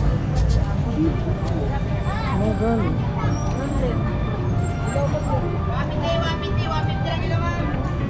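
Busy street ambience: a steady rumble of road traffic with people talking among themselves.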